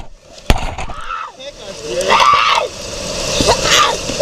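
A young girl crying out and wailing in several high-pitched cries during a struggle, with a sharp knock about half a second in.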